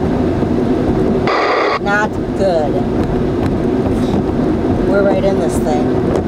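Car driving on a wet highway, heard from inside the cabin: steady engine and tyre noise, with a short hiss about a second in.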